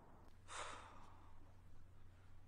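A faint, short sigh, a single breathy exhale that fades away, about half a second in; otherwise near silence.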